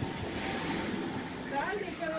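A steady rushing noise, like wind on the microphone.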